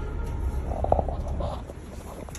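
Low rumbling noise with a short metallic clank about a second in, as a metal mesh subway gate is pushed through.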